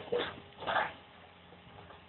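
A dog barking a few times in quick succession in the first second, over the faint steady running of a working excavator.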